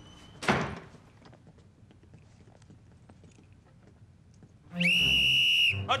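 A whistle blown once near the end, one shrill steady note about a second long. Earlier, about half a second in, comes a single short, loud thud.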